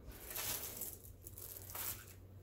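Diamond painting canvas rustling and crinkling as it is shifted by hand on the light pad, once in the first half-second and again near the end.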